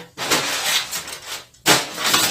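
Crumpled brown kraft packing paper rustling and crackling as a hand pulls at it inside a cardboard box, with a sudden louder crackle near the end.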